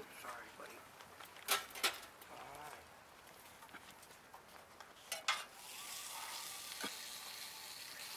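Low outdoor background: faint voices in the distance, a few sharp clicks, and a steady hiss that comes up about five and a half seconds in.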